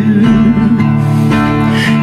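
Acoustic guitar strummed in a steady country rhythm between sung lines.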